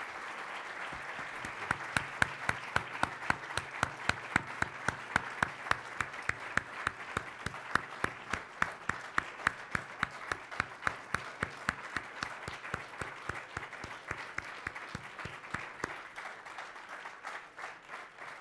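Audience applauding, with one pair of hands clapping close by in an even rhythm of about three claps a second through most of it. The applause thins out near the end.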